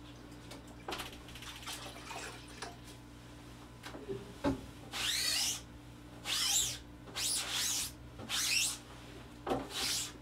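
Wet sponge scrubbing across the mesh of a silkscreen to wash out leftover ink with water: a few soft water sounds first, then from about halfway a run of rasping rubbing strokes, roughly one a second.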